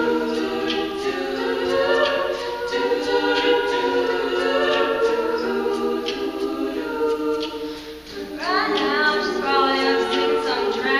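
Female a cappella group singing in several-part harmony, with no instruments. About eight seconds in the sound briefly drops away, then the voices slide steeply up in pitch.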